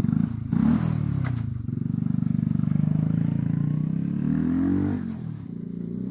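Motorcycle engine sound effect: the engine revs up and down, runs steadily, rises in pitch, then drops and grows quieter about five seconds in.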